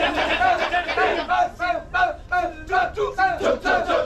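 A large chorus of men performing the Balinese kecak chant: rapid, rhythmic, repeated shouts of "cak" that pulse several times a second.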